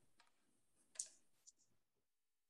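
Near silence broken by a few faint, short clicks, the clearest about a second in and a weaker one half a second after.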